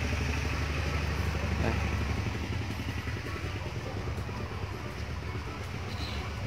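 A small engine running steadily nearby, a low hum that eases off a little about two seconds in.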